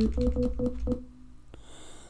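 Short synthesizer notes from LMMS's built-in TripleOscillator instrument, a quick run of single notes played live on a computer keyboard while recording, about four a second, stopping about a second in.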